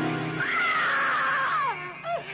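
A sustained music chord cuts off about half a second in. A single high, drawn-out scream follows, wavering, then sliding steeply down in pitch near the end.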